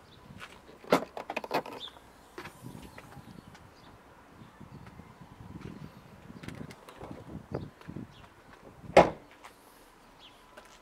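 Range Rover Evoque tailgate being worked: a sharp latch click with a few rattles about a second in as it opens, then one loud thud near the end as it is shut.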